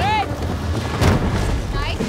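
Contestants shouting as they drag a wooden sled loaded with crates over log rollers, with a low rumble throughout and one sharp thump about a second in.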